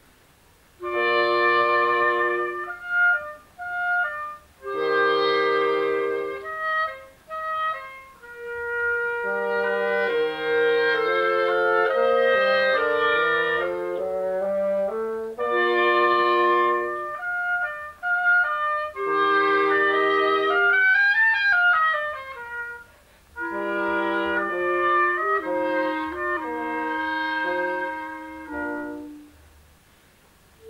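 Instrumental music played by wind instruments, several parts sounding together in short phrases separated by brief pauses, with a quick run that climbs and falls back about two-thirds of the way through.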